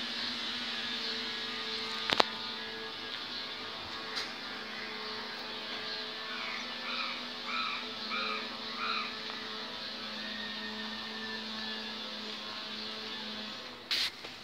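A steady low mechanical hum under a faint hiss, with a sharp click about two seconds in. About six seconds in comes a run of five short chirps, roughly half a second apart.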